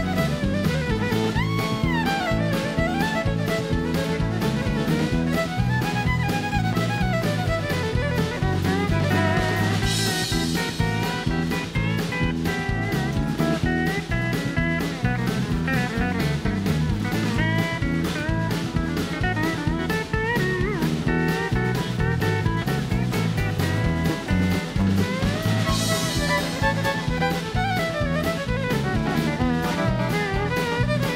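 Live honky-tonk country band playing an instrumental break: fiddle at the start, with electric guitar and pedal steel over acoustic guitar and a steady drum-kit beat. Cymbal crashes come about ten seconds in and again near the end.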